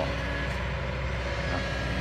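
Kobelco hydraulic excavator's diesel engine running steadily as it digs, a continuous low hum.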